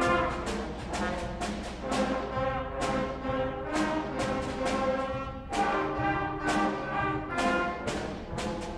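A student instrumental ensemble playing a piece live in an auditorium, with short, accented notes in a steady rhythm.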